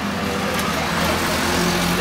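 A steady rushing noise that swells slightly, with a low hum and faint speech underneath.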